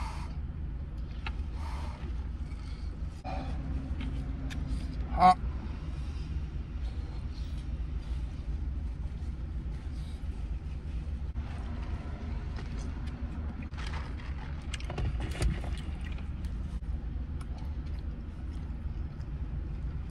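Steady low rumble of a parked car's idling engine, heard from inside the cabin, with faint rustling and chewing sounds of someone eating, and one sharp click about five seconds in.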